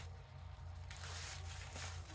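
Faint rustling and handling noises over a low steady hum, slightly stronger about half a second in.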